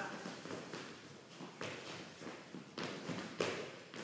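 Dancers' sneakers stepping and tapping on a hardwood studio floor in Charleston footwork, as a scattering of short taps and scuffs at an uneven beat.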